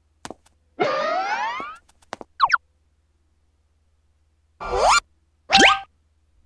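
Cartoon sound effects: a springy, rising boing lasting about a second, with a few light clicks and a short chirp after it. Two short rising effects follow near the end.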